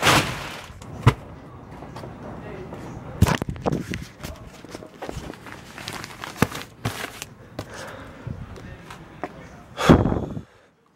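Bundled newspapers being handled and stacked: irregular knocks and thumps with rustling of paper and plastic wrapping.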